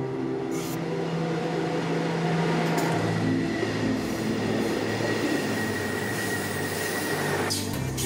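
Background music with a loud rushing noise laid over it. The noise builds from about half a second in, carries a steady high whine through the middle, and cuts off suddenly near the end.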